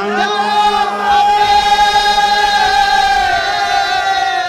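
Sikh Akhand Kirtan: a male lead singer and a group of men singing together over a harmonium drone, holding one long note through the middle that dips slightly near the end.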